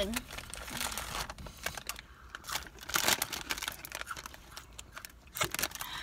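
Snack-chip bag being crinkled and handled, with irregular crackling all through.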